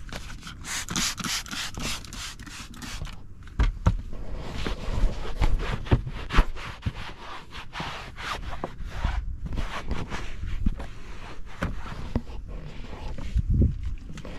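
Irregular scraping and rubbing strokes of cleaning work against a car seat's plastic side trim and fabric, with a couple of dull bumps.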